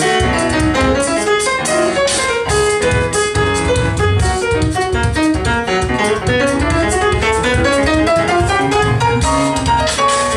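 Grand piano playing a samba-jazz solo, with runs that step down early on and climb again in the second half, over voice percussion: mouth-made kick-drum thumps and hissy hi-hat clicks keeping the samba beat.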